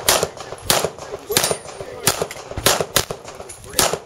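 Handgun fired in a steady string of single shots, about one every two-thirds of a second, six or seven in all.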